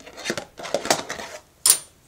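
Makeup containers clattering and knocking together as they are rummaged through by hand, in a run of irregular clicks, with one sharp, louder click near the end.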